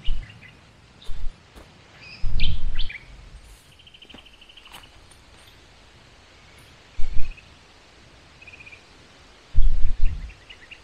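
Wild birds chirping in short calls, with one rapid trill about four seconds in. A few short low rumbles, louder than the birds, come about one, two and seven seconds in and again near the end.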